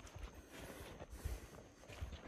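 Faint footsteps of a person walking at a steady pace, soft low thuds about two a second.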